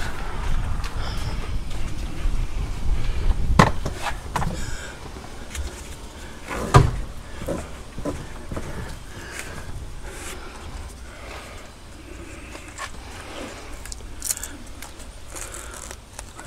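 Handling noises as an orange kayak tie-down strap is pulled tight from a ladder: two sharp knocks, the louder about seven seconds in, with rustling and lighter clicks between and after.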